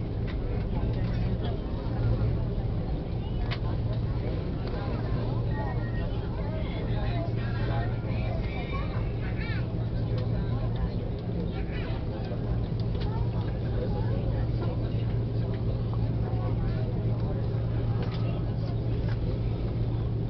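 Airbus A330 cabin noise while taxiing: a steady low hum from the engines and cabin air, with passengers talking indistinctly over it.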